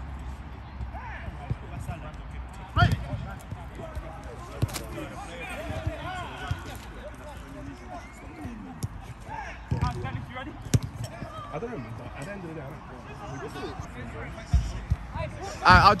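Football being kicked around on a five-a-side pitch: sharp thuds of boot on ball every few seconds, with players calling out in the distance. A loud shout breaks out right at the end.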